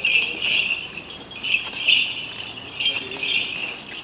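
Small metal bells jingling in repeated bursts as they are swung, the bell chains of an Orthodox censer.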